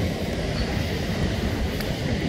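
Steady low rumble of wind and ocean surf on an open rocky shore.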